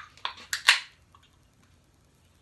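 Aluminium beer can being cracked open: a few quick sharp clicks of the pull-tab in the first second, the loudest with a short fizz.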